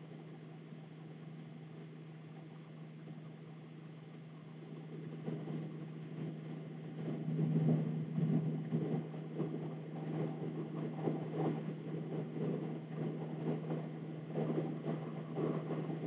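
A pen writing numbers on paper in short scratching strokes, starting about five seconds in, over a low steady hum.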